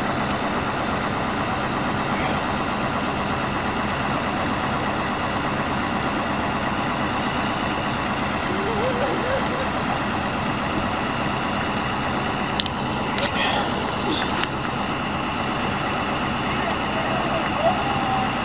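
Fire truck engine running steadily, a continuous loud drone, with faint voices and a few short clicks over it.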